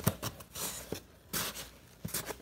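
A sharp knock, then scattered rustling of paper packing being searched through in a cardboard shipping box.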